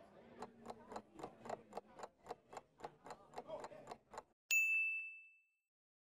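Countdown-timer sound effect: a steady run of clock ticks, about four a second, stops after about four seconds. A single bell ding follows and fades out, signalling that the answer time is up.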